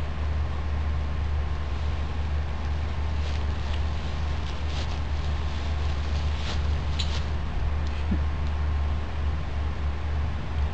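Steady low rumble and hiss of outdoor background noise, with a few faint ticks in the middle.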